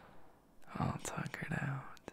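A man's soft, close-up whispered murmuring, about a second long, starting a little way in.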